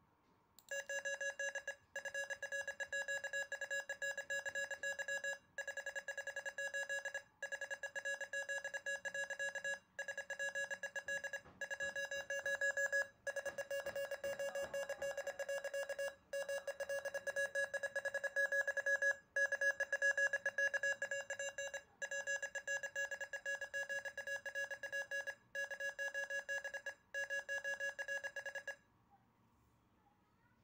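A computer-generated Morse code tone at about 558 Hz, a buzzy beep keyed rapidly on and off into dots and dashes that spell out text, with short pauses between words. It starts just under a second in and stops shortly before the end.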